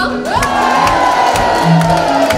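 Live band playing, drums and bass going on, while one voice swoops up into a long high held note that slowly sags, with crowd cheering.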